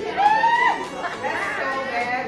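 Indistinct voices talking, with no clear words, including a long drawn-out vocal sound in the first half-second.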